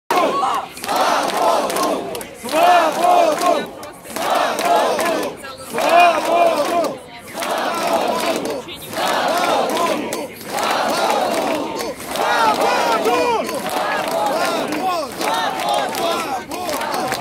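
A crowd of protesters chanting in unison, short shouted phrases repeated over and over, about one every second and a half with brief pauses between.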